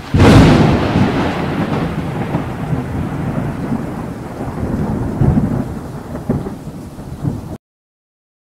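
Thunderstorm sound effect: a loud thunderclap at the start, then further thunder rumbles over steady rain. It cuts off suddenly near the end.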